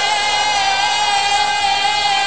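Music: one long, high note, held with a slight waver, over a backing track; it sounds like a singer sustaining a note.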